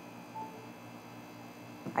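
Faint steady electrical hum, with one short single-pitched beep about half a second in.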